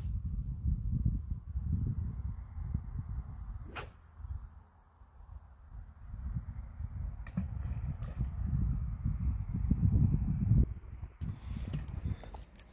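Wind buffeting the microphone throughout, with the sharp whoosh of a carp rod being cast about four seconds in, followed by a faint fading hiss of line running off the reel. A couple of small clicks come a few seconds later.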